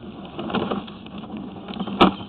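A sewer inspection camera on its push cable moving through a cast iron sewer pipe: faint irregular scraping and light knocks over a steady low hum.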